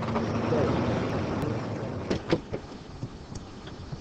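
Car noise that builds to its loudest about half a second in and then slowly fades, like a car driving away, with a few short clicks about two seconds in.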